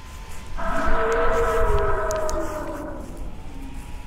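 A long, eerie creature howl, pitched and rich in overtones, that starts suddenly about half a second in, slowly sinks in pitch and fades out after about two and a half seconds.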